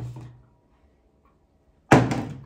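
Two impacts of a flipped bottle landing on a hard surface: a short thud at the start, then a much louder, sharper hit near the end that rings on briefly.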